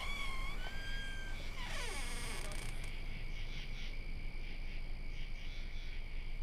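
Rural summer evening ambience. A steady high insect trill runs throughout and turns into a regular chirping about three times a second from halfway through. A few short whistled calls and one steeply falling call come in the first two seconds, over a faint low rumble.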